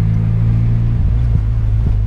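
Turbocharged VW Golf engine heard from inside the cabin: a steady low drone as the car rolls along slowly. Its note shifts about a second in.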